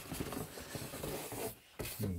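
Cardboard scraping and rubbing against cardboard as a shoebox is pulled out of a cardboard shipping box. The scraping stops about one and a half seconds in.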